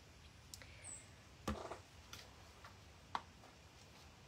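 Faint clicks and light knocks of craft supplies being handled on a tabletop, a plastic glue bottle among them; the loudest is a soft thump about a second and a half in.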